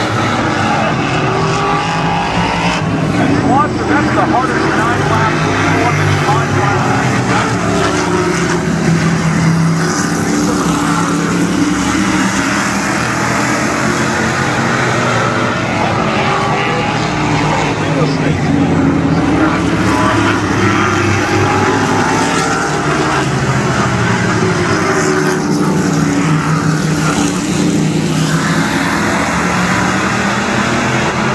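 A pack of modified race cars lapping a paved oval, their engines swelling and fading in waves as the cars come down the straights and go through the turns.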